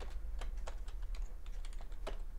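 Computer keyboard being typed on: a quick, uneven run of short keystroke clicks.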